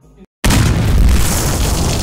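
An explosion-like boom sound effect cuts in suddenly about half a second in, after a brief silence. It carries on as loud, dense noise, heaviest in the bass.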